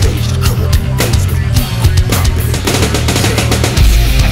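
Heavy rap-metal band playing an instrumental passage: distorted guitars and bass over a pounding drum kit, with no vocals. A deep low bass note drops in near the end.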